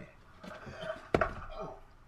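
A single sharp knock a little after a second in, over faint voices.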